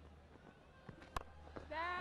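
A single sharp crack of a cricket bat striking the ball, about a second in, over a faint low hum of stadium background.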